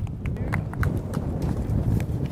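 Wind buffeting the microphone as a low rumble, with a handful of light, irregular clicks and taps scattered through it.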